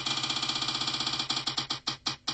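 Prize-wheel app on a phone playing its spinning tick sound: rapid pitched ticks, about a dozen a second, that slow down toward the end as the wheel comes to rest.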